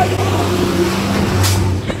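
Street traffic: a motor vehicle's engine running with a steady low drone, and a brief sharp knock about one and a half seconds in.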